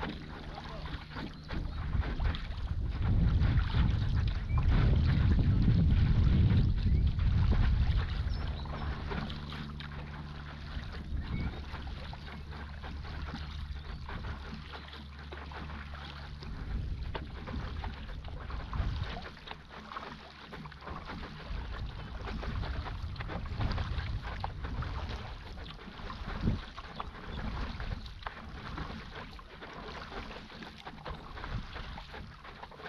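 Water splashing and lapping around a stand-up paddleboard as it moves along, with small splashes throughout. Wind buffets the microphone, loudest a few seconds in for about five seconds.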